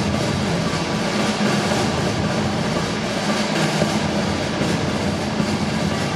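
A dense, steady clatter of rapid knocks that cuts in suddenly just before and takes the place of the show's orchestral music, heaviest in the low range.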